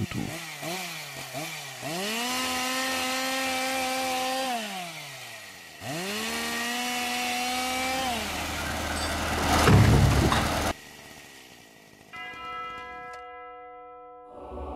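Two-stroke chainsaw cutting plane-tree trunks: the engine revs up twice, each time holding high for about two seconds under cut before dropping back to idle. A loud low thud comes about ten seconds in, then a few held music notes near the end.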